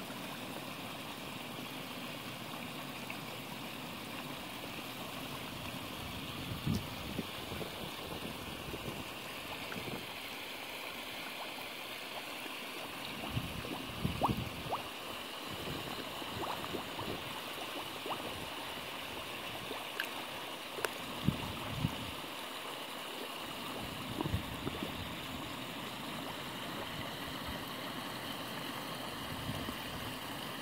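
Steady gurgling of running water in a koi pond, with a few short splashes and slurps now and then from koi breaking the surface.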